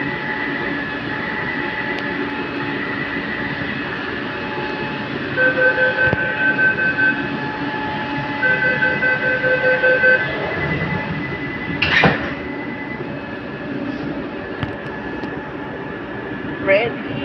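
Metro train car interior with a steady hum and whine from the train. Two runs of rapid door-closing warning beeps sound about five and eight seconds in. A short loud burst of noise follows near twelve seconds.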